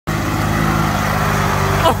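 Riding lawn mower engine running steadily, with a sudden knock just before the end as the mower rears up and tips over.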